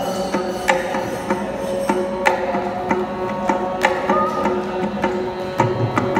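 Carnatic music: a mridangam playing a run of sharp strokes under a violin's held and sliding melody line.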